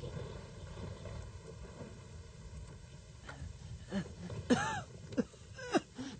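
A low, steady rumble of rain and wind. Over it, from about three seconds in, come a few short, pained vocal sounds like groans and a cough-like gasp.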